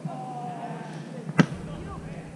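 A single sharp smack of a hand or forearm striking a sand volleyball, about one and a half seconds in.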